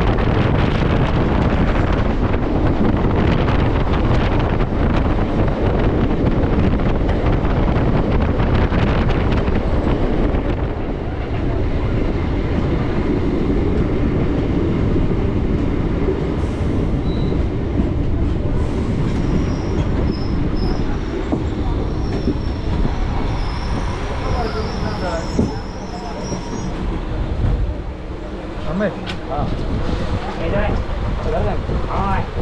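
Adra–Barabhum MEMU electric multiple-unit train running along the track, heard from its open doorway as a loud steady rumble of wheels on rail with air rushing past. The noise eases in the second half as the train slows, with a faint high squeal from the wheels.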